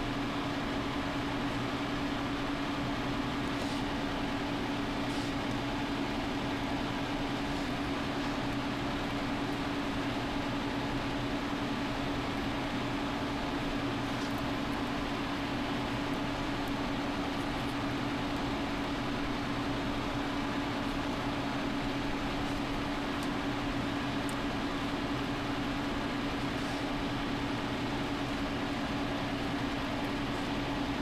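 Steady background hum: a constant low drone holding one steady tone over an even hiss, with no change throughout.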